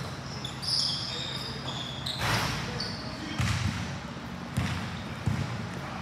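A basketball bouncing a few times on a gym court, the bounces about a second apart. There are a couple of high squeaks in the first two seconds.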